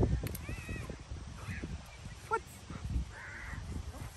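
A few short animal calls: an arching call just after the start and a harsher one about three seconds in, with a man asking "What?" between them.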